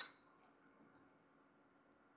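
A single short metallic clink of steel fragging tweezers being set down against other metal tools, with a brief high ring.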